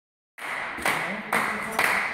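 Hand claps ringing in a sports hall, a few sharp claps about two a second, over faint voices.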